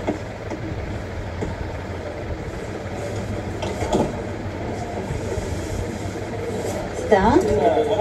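A steady low background rumble with faint voices, and clearer speech starting near the end.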